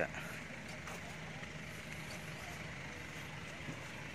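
Steady low engine hum, with a steady high hiss over it.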